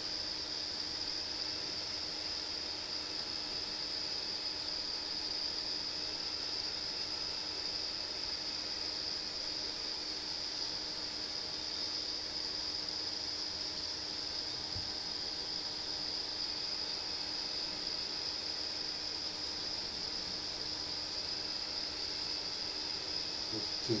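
A steady high-pitched whine, even and unchanging, with a fainter low hum underneath.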